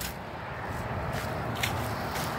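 Steady outdoor background noise, a low hum and hiss, with a couple of faint ticks partway through.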